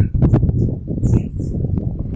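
Footsteps on the wooden planks of a boardwalk: a string of irregular knocks over a low rumble.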